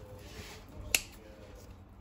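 Kitchen scissors closing once through a toasted, cheese-topped croque-monsieur: a single sharp snip about a second in, over faint hiss.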